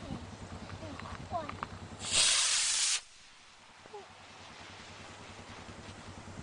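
Model rocket motor igniting at liftoff about two seconds in, giving about one second of loud hiss that cuts off suddenly as the motor burns out.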